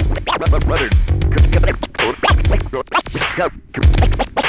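Vinyl record scratched back and forth by hand on a turntable, cut in and out with the mixer's fader, giving quick chopped sounds that sweep up and down in pitch. Under it runs a drum beat with a regular low kick.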